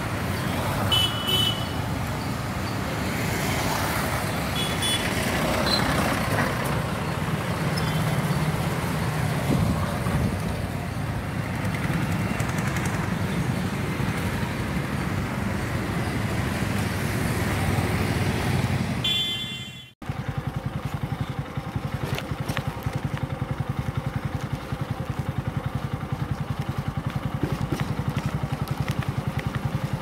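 Motorcycle and scooter engines running in light street traffic, heard from a moving vehicle, with a few short horn toots in the first seconds. About two-thirds of the way through the sound drops out for a moment and comes back as a steadier, evenly pulsing engine drone with road noise.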